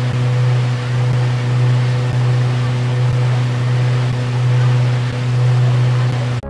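River cruise boat under way: a steady low engine drone with the even rush of water from its wake.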